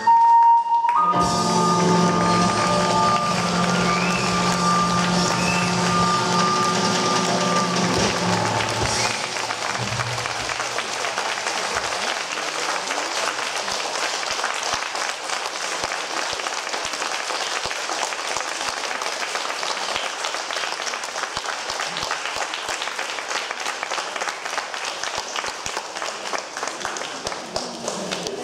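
A live ocarina, cello, piano and drum ensemble ends a piece on a long held final chord, the ocarina holding a high note over the low strings for about eight seconds before it stops. Audience applause then follows steadily.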